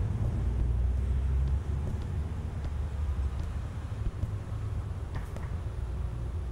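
Low, steady rumble of an idling car engine with faint outdoor street ambience, slightly louder for the first second or so.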